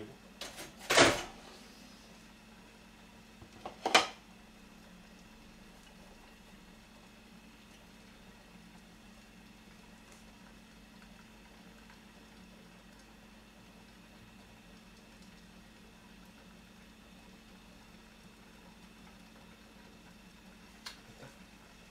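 Tableware clattering against a stone kitchen counter twice, about a second in and again at four seconds, as dishes and a spoon are set down. After that, quiet room tone with a faint steady low hum.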